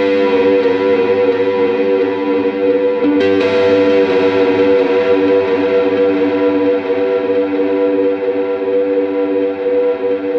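Electric guitar played through a Southampton Pedals Indie Dream, with both its overdrive and its delay/reverb side switched on: gritty overdriven chords ring out and blur into echoes and reverb. A new chord is struck about three seconds in.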